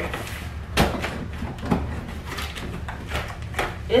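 Large cardboard shipping box being handled on a table: a few knocks and scrapes of cardboard, the loudest about a second in.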